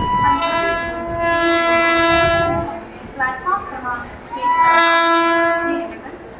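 Train horn sounding two long, steady blasts: the first lasts about two and a half seconds, and the second starts about four seconds in and lasts about a second and a half.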